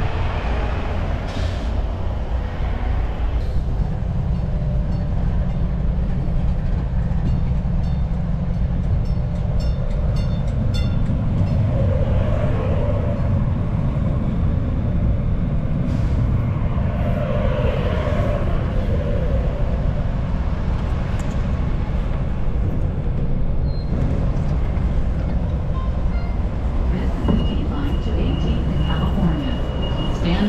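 Light rail train running, a steady low rumble, with a steady high tone coming in near the end.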